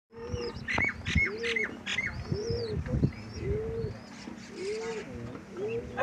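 Domestic pigeons cooing, a low rising-and-falling coo repeated about once a second, with small birds chirping and whistling higher up, busiest in the first two seconds.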